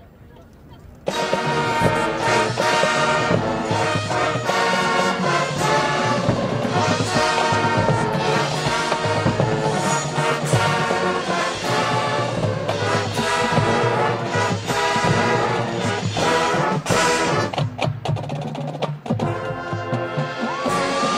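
High school marching band with brass and percussion opening its field show: after a quiet first second the full band comes in loud all at once and plays on through a dense, brass-led passage.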